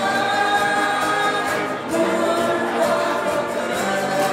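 A mixed vocal group of men and women singing a Vietnamese spring song in harmony, with long held notes, accompanied by acoustic guitars and a cajon keeping a steady beat.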